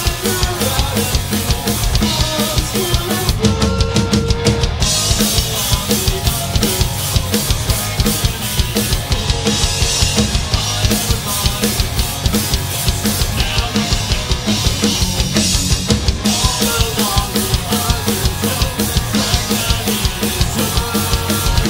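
Rock band playing live: electric guitars, bass guitar and a drum kit, loud, with a steady driving beat.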